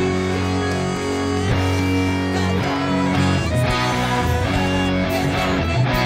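Electric guitar playing a rock arrangement of a song, held chords changing about every second.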